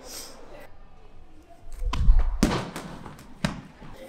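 A 4 kg throwing ball thrown hard and landing on the indoor track: a heavy low thud about two seconds in, then a sharp impact, and a second impact about a second later.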